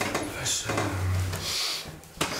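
A person's voice: a low, drawn-out murmur lasting most of a second, with hissing sounds just before and after it.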